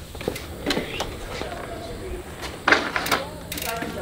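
Trek mountain bike's rear freehub ratcheting in quick ticks as the rear wheel turns, with knocks and rattles from the bike being handled and a louder scrape a little after halfway.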